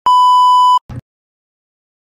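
A single loud electronic beep, one steady high tone held for under a second that cuts off sharply, followed by a short low thump.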